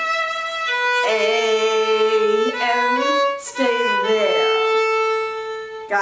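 Solo violin bowing a slow phrase of a waltz tune in held notes, with a sliding change of pitch a little past the middle and a long sustained note to finish.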